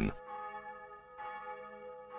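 A bell ringing with long, steady tones, struck again about a second in.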